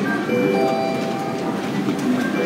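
Airline boarding gate's electronic chime signalling priority boarding: a short phrase of several clear tones at different pitches, repeating about every two seconds, over the murmur of a crowded departure lounge.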